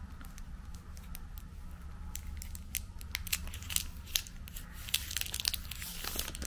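Clear plastic packaging sleeve crinkling and crackling as it is slid off a makeup brush, in a run of sharp crackles that gets busier from about two seconds in.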